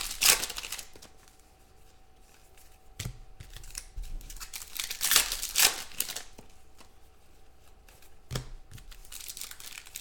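Foil trading-card packs being torn open and crinkled by hand, in several separate rips, the loudest near the middle.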